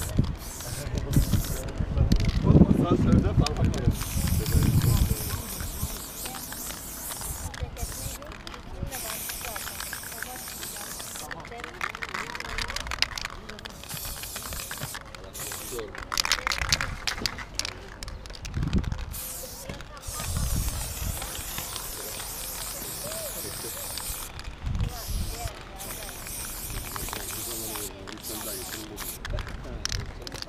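Aerosol spray-paint can spraying in repeated bursts, its hiss starting and stopping again and again as paint is laid onto a concrete wall.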